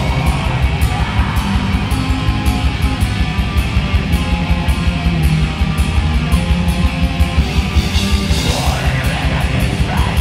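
A black metal band playing live, with distorted electric guitars over fast, dense drumming.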